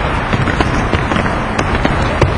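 A dense, irregular run of thumps and slaps from players' feet landing jumps on a hard gym floor, over a steady echoing background of gym noise.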